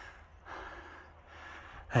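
A man breathing hard, two audible breaths in a row, out of breath from climbing a steep mountain path.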